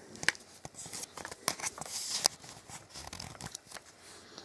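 Handling noise close to the microphone: scattered small clicks and crackly rustles as the phone and camera are held and moved, with a brief hiss about halfway through.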